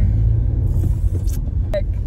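Steady low rumble of a car heard from inside the cabin, engine and road noise, with a few faint clicks in the middle.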